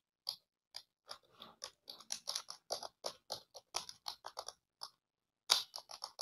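Typing on a computer keyboard: irregular key clicks, several a second, with a short pause about five seconds in before a last few keystrokes.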